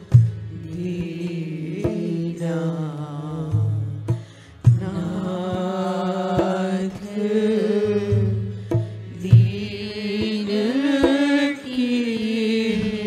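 Hindi devotional bhajan: a voice singing a flowing melody over hand-drum strokes, with a short drop in the music a little past the four-second mark.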